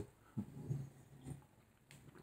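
A man sipping and swallowing a drink from a paper cup, with faint short low sounds from the mouth and throat.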